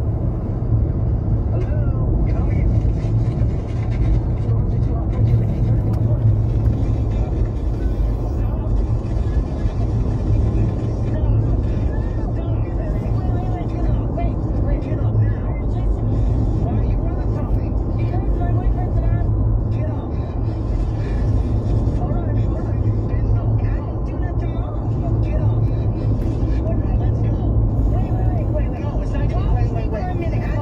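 Steady low rumble of a truck's engine and road noise heard inside the cab while driving, with a voice and music from the radio playing underneath.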